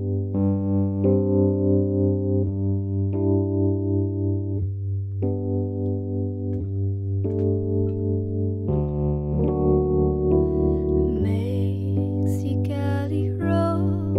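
Electric piano playing a slow intro of sustained chords with a pulsing tremolo, the chord changing every second or so. About eleven seconds in, a brighter, busier layer joins above the chords.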